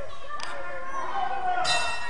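Spectators' voices in a hall around a wrestling ring. A short sharp knock comes about half a second in, and near the end there is a brief, bright metallic ringing or shout.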